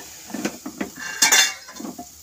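Wooden spatula knocking and scraping against a steel pot as flour is stirred into hot water to make dough. There are several short knocks, with a louder, ringing clatter just past a second in.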